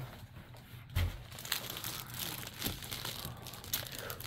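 Plastic packaging crinkling as a bagged storage case is handled and set on a wooden table, with a single low thump about a second in.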